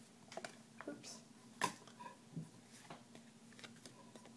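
Faint handling noises of trading cards being moved on a table: a few light clicks and rustles, with one sharper click about one and a half seconds in.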